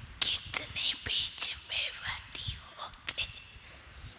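Whispered speech: a run of short, breathy syllables for about three seconds, with no voiced tone under them.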